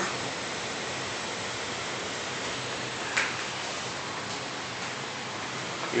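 Steady background hiss with no clear source, and one brief short sound about three seconds in.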